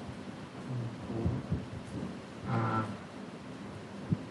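Steady hiss of lecture-hall room noise, with a few low thumps about a second in and a short murmured voice sound just before the end.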